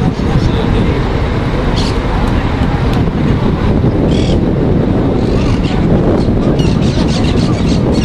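Wind rumbling on the microphone, with indistinct shouting from rugby players around a ruck.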